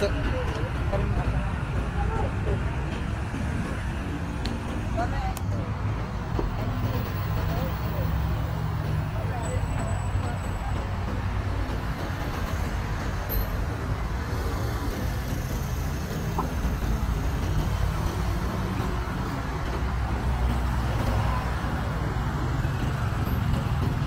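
Busy city street ambience: a steady rumble of car and motorbike traffic on the road alongside, with people's voices close by.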